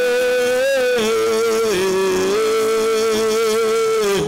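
A man's voice singing one long, high held note into a microphone, dipping a little in pitch about two seconds in before settling again.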